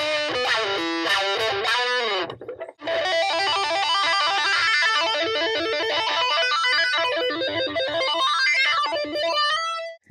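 Electric guitar, a Yamaha Pacifica 112 played through a Dunlop CryBaby 535Q wah-wah pedal and a Blackstar HT Dual tube distortion pedal into a Fender Superchamp XD amp: distorted notes with the wah sweeping the tone up and down. There is a short break about two and a half seconds in, then a run of notes that stops suddenly at the end.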